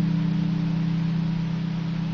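Lyon and Healy Troubadour V lever harp with a low chord left ringing, its strings sustaining and slowly fading with no new notes plucked.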